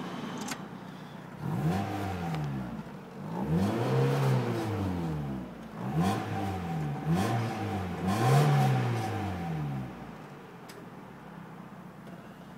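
1995 Mazda Miata's four-cylinder engine revved about five times in quick succession, each blip rising and falling in pitch, then settling back to a steady idle near the end.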